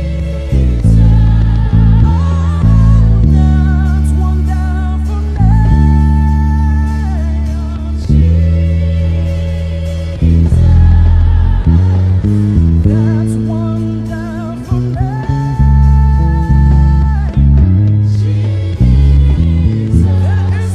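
Electric bass guitar playing long, held low notes and short runs under a gospel worship song, with a singer's voice carrying the melody above it.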